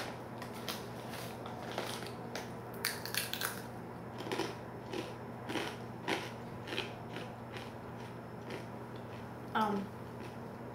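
Takis Fuego rolled tortilla chips being chewed: irregular crisp crunches, several a second, thinning out toward the end. A short vocal sound comes just before the end.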